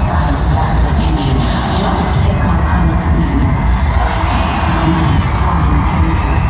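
Loud concert music from an arena sound system, heavy in bass, with the crowd cheering and screaming over it.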